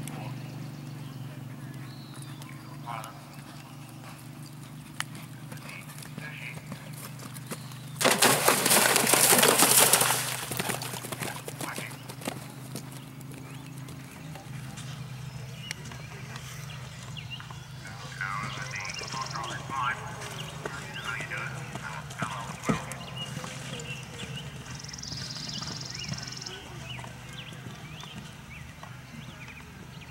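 A horse galloping on grass, its hoofbeats on the turf, with voices in the background. About eight seconds in, a loud rush of noise lasts about two seconds and is the loudest sound.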